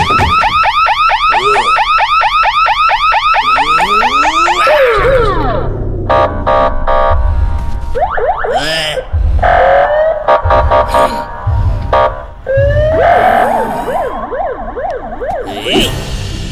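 An electronic alarm blaring with a rapid warble, several sweeps a second, which cuts off about five seconds in. Cartoon sound effects and music follow, with sliding whistle-like tones and low thumps.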